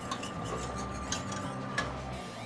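Wire whisk stirring melting butter in a stainless steel saucepan, its wires lightly clicking and scraping against the pan as the butter melts for a roux.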